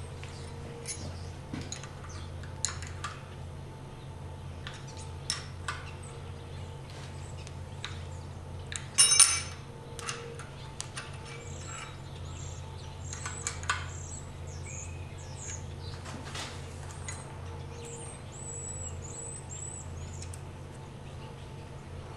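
Scattered metallic clicks and clinks of open-end wrenches working the exhaust valve tappet's adjusting screw and lock nut on a Willys F-134 Hurricane engine as the valve lash is reset, with the loudest cluster of clinks about nine seconds in, over a steady low hum. Faint bird chirps come in around the middle and again later.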